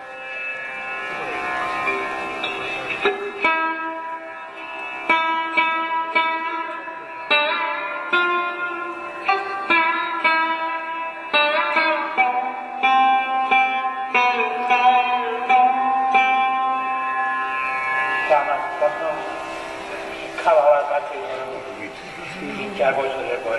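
Sarod played solo: single plucked notes struck one after another, each ringing on, with some notes sliding in pitch.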